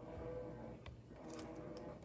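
Faint light ticks and taps of paper craft pieces being handled and pressed down on a table, a few separate clicks over a quiet room.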